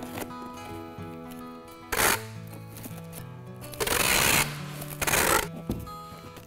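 Packing tape pulled off a handheld tape gun with a loud rasp, three times, as a cardboard box is sealed; the second pull is the longest and loudest. Background music plays under it.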